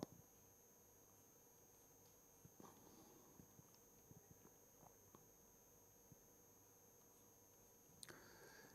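Near silence, with a few faint ticks and taps from a pen on a writing tablet as a diagram is drawn, mostly between about two and a half and five seconds in.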